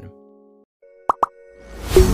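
Animated logo intro sound effects: a held synth chord fades out, two quick rising bloops sound about a second in, then a whoosh swells up near the end into the intro music.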